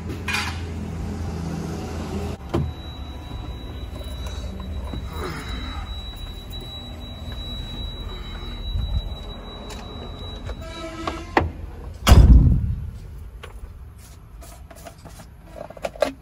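Low, steady rumble of a BharatBenz truck's diesel engine idling, with a few clicks and one loud thump about twelve seconds in.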